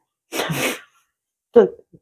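A woman's short, breathy burst of air through nose and mouth, lasting about half a second, then a couple of spoken words near the end.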